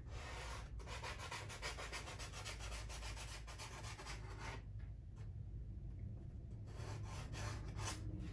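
A pastel pencil scratching faintly across pastel paper in many quick, short strokes as lines are sketched. The strokes stop for about two seconds past the middle, then start again.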